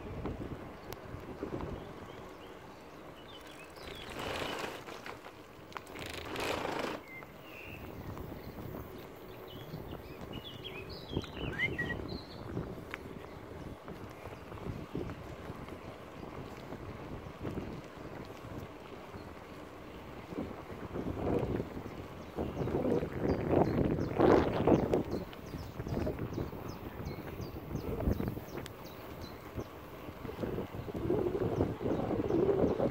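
Wind rushing over a phone's microphone on a moving bicycle, swelling in gusts several times and loudest a little over twenty seconds in, with the bike's rolling noise underneath.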